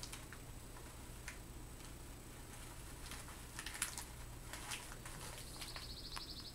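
Faint clicks and rustles of hanks of paracord and their paper labels being handled, over a low steady hum. A brief high-pitched trill of rapid pips comes in near the end.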